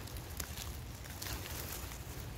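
Faint rustling and crackling of dry fallen leaves, a few short rustles over a low steady rumble.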